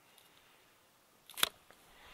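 Mostly quiet, then a single sharp snip of hand pruning shears cutting through a rose cane about one and a half seconds in.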